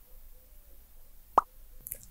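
Quiet pause in speech: faint room tone, broken once about one and a half seconds in by a single short mouth click.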